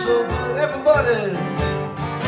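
Live acoustic blues: a twelve-string acoustic guitar and a second acoustic guitar played together, with a man singing.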